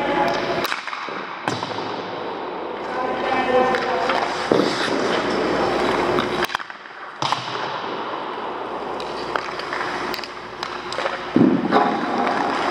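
Hockey skates scraping and carving on rink ice, with a few sharp knocks.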